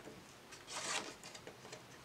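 A sheet of cardstock being handled and positioned. There is a faint brief swish of paper rubbing about a second in, and a few light ticks.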